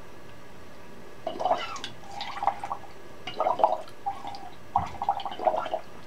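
Air puffed from the cheeks through drinking straws into cups of water, bubbling in a series of short bursts that begin about a second in. This is the cheek-puff exercise used to learn circular breathing for the clarinet.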